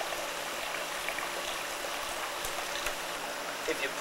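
Steady rushing background noise with no rhythm or distinct events, and faint voice fragments near the end as speech begins.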